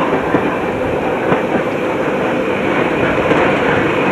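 Small diesel shunting locomotive rolling slowly along the track with its engine running steadily and its wheels clicking over the rails.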